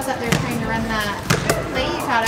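A basketball bouncing on a gym floor, a few separate bounces, with people's voices in the background.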